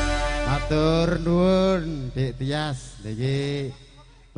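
A man's voice over the stage PA calling out in long, drawn-out sing-song syllables that bend up and down in pitch, after the band's last held note fades in the first half second. It ends in a short lull near the end.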